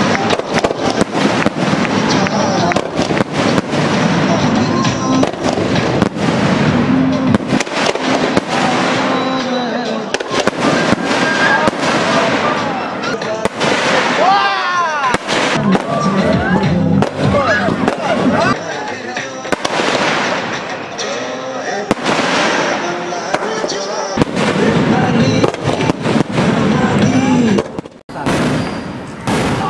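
Aerial fireworks bursting and crackling in quick succession, many sharp bangs and pops one after another, with voices and music mixed in.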